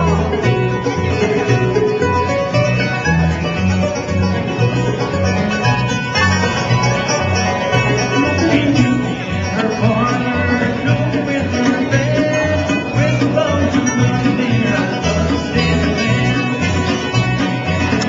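Bluegrass band playing live: banjo, acoustic guitars, mandolin and upright bass, the bass keeping a steady beat.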